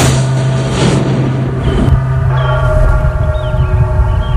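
Title-sequence music and sound design: a hit at the start, then a loud sustained low drone with steady higher tones layered on top from about halfway through.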